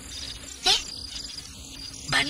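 Insects chirping steadily in a high trill, with one brief rising squeak a little over half a second in.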